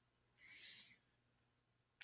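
Near silence in a pause in speech, with one faint, brief, soft sound about half a second in.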